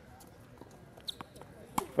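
A few sharp taps of a tennis ball on a hard court: a pair about a second in and a louder one near the end.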